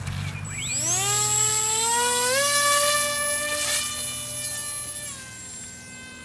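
Electric motor and propeller of a Hubsan Spy Hawk RC plane spinning up with a rising whine, then running steadily at a high pitch with a step up in throttle, and dropping in pitch near the end.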